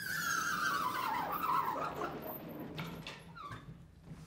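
Vertically sliding blackboard panels being moved, giving a long squeal that falls steadily in pitch over the first second and a half or so. Quieter scraping and a few knocks follow as the panels travel and settle.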